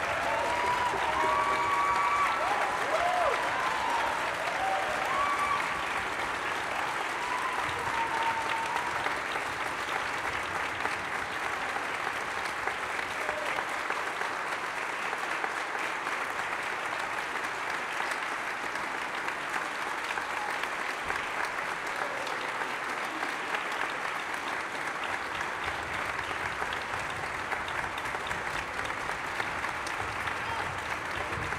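Audience and orchestra applauding steadily, with a few cheers over the clapping in the first several seconds.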